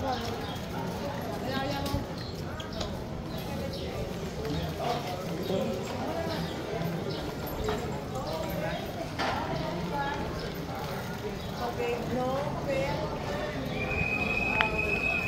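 Street ambience of indistinct chatter from passersby, with a few sharp clicks and knocks.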